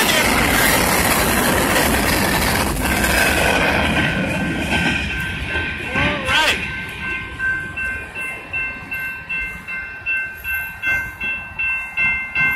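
Kansas City Southern freight train rolling over the crossing, its noise fading about four seconds in as the cars clear. Under it, the crossing's warning bell rings on in a steady, quick repeating stroke while the gates stay down.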